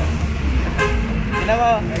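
A few short spoken words over a steady low rumble from vehicles.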